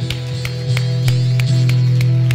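Church worship band holding a sustained keyboard chord with electric guitar at the end of a song, with sharp hand claps about four times a second.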